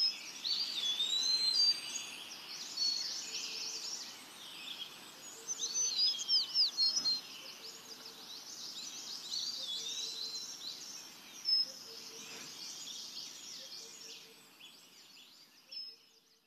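A chorus of many songbirds, with dense overlapping chirps and whistles, fading out near the end.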